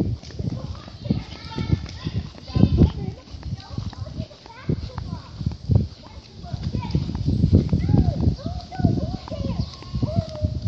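Irregular footsteps and handheld-camera bumps while walking on a paved path, with children's voices calling out, clearest near the end.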